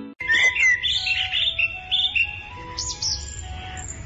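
Birds chirping and tweeting in a village-morning sound effect, over soft background music of held notes.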